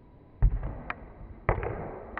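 A football kicked hard in a free kick, a sharp thud, then a second sharp thud about a second later, with a few faint clicks near the end.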